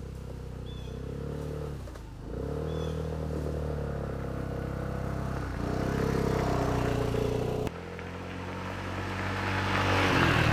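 Honda SH150i scooter's single-cylinder four-stroke engine riding toward and past, its note rising and falling with the throttle and growing louder as it nears. The note dips briefly about two seconds in, then climbs again. Near the end it cuts to a second pass that builds to the loudest point.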